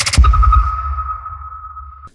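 Logo-intro sting sound effect: a deep boom hit about a quarter second in, followed by a single steady, sonar-like ping tone that slowly fades with a dying low rumble, then cuts off.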